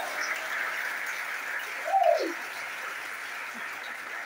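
Congregation applauding after a run of shouted hallelujahs, with one voice calling out briefly, falling in pitch, about two seconds in.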